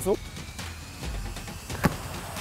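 A football kicked once from the corner: a single sharp thud near the end, over a faint low rumble.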